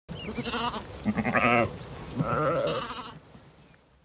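Ewes bleating: three wavering calls in quick succession, then fading away.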